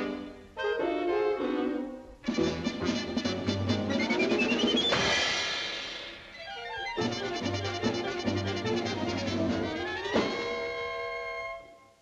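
Orchestral cartoon score led by brass, playing fast, busy phrases. Two rising runs each end in a sharp hit, about five seconds in and again about ten seconds in. The music briefly drops off near the end.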